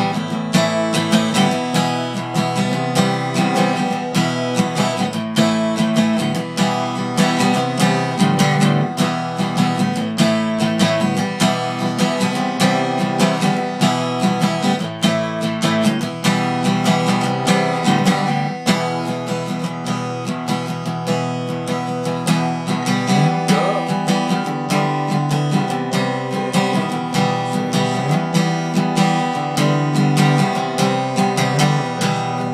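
Acoustic guitar strummed continuously in an even rhythm, the chords ringing and changing now and then.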